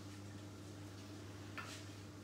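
Low steady hum with one light click about one and a half seconds in: a metal fork or ladle tapping the frying pan while pasta is twisted into a nest.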